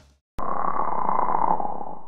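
A short electronic outro sound effect: a steady, buzzy, filtered synthesizer sound that starts suddenly about half a second in, holds at one level for about a second and a half, and cuts off abruptly.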